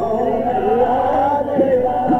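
Male voice singing a devotional kirtan chant, the melody gliding slowly up and down over a steady drone.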